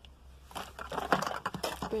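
Cosmetic containers and their packaging being rummaged through and handled in a box: a dense run of rustles and light plastic clicks starting about half a second in.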